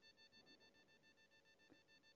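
Near silence: faint room tone with a faint steady hum of high tones.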